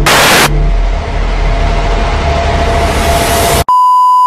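A sudden loud burst of static-like noise, then a harsh, noisy rush with a low rumble underneath. It cuts off abruptly near the end and a steady, pure electronic beep tone begins.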